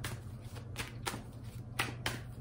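A tarot deck being shuffled in the hands: several separate short, sharp card snaps as cards slap against the deck.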